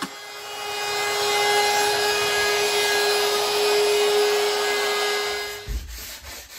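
DeWalt compact router with a 1/8-inch roundover bit running and cutting the edge of a pine tabletop: a steady high whine over the cutting noise. It builds up over the first second and stops shortly before the end.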